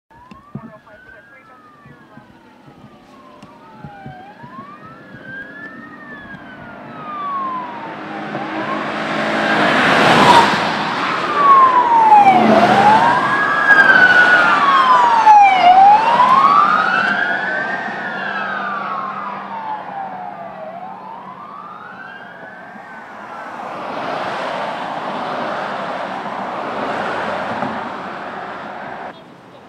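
Police car sirens wailing, the pitch sweeping up and down about every two seconds, with more than one siren overlapping. The sirens swell to their loudest through the middle along with the rush of passing vehicles, fade, then rise again near the end.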